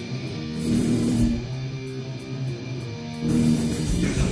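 A live rock band plays the opening of a song on electric guitars and drums, with cymbal crashes. It gets louder about half a second in and again near the end.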